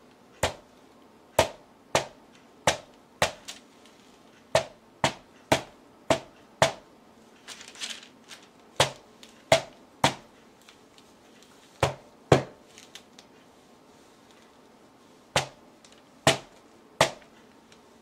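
A rubber mallet smacking down again and again onto a canvas panel coated in wet acrylic paint on a tabletop: sharp single strikes, often about two a second, in bursts with short pauses between.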